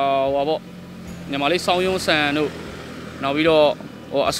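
Speech in three short phrases, with a faint steady low hum behind it.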